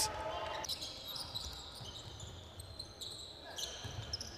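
On-court sound of an indoor basketball game: a ball bouncing on the hardwood floor, with short, faint, high squeaks over a low hall background.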